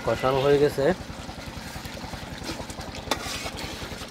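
A steady low throbbing drone, with a sharp metal clink about three seconds in from a ladle striking the aluminium pot of boiling curry.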